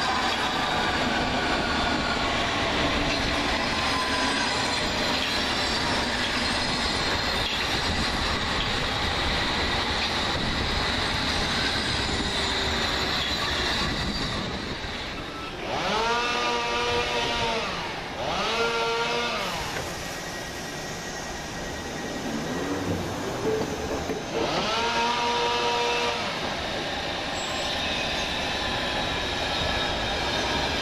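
London Underground S7 Stock train pulling away and running off, a steady rush of motor and wheel noise through the first half. Then three pitched tones that each rise and fall over about two seconds sound over a quieter rail background as another S7 Stock train comes in.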